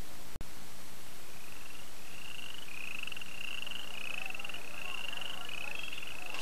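Frog calling: a run of about seven short, slightly rising trills, one roughly every two-thirds of a second, starting about a second in, over a steady hiss and low hum.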